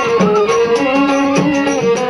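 Bengali folk (bicched gan) music, instrumental: a held melody line over regular hand-drum strokes.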